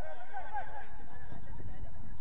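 Distant shouts of players calling across a football pitch, a few short rising and falling cries in the first second, over a low rumble.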